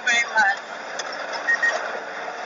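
Steady vehicle and street-traffic noise, as from a trotro minibus, with a short burst of a person talking near the start and a brief high beep-like tone about one and a half seconds in.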